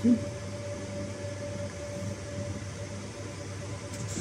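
Steady drone of equipment cooling fans in a server cabinet: a low hum with a faint, even higher-pitched tone above it.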